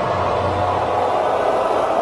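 Advert soundtrack: a swelling rushing sound effect, with the music's low notes fading out under it.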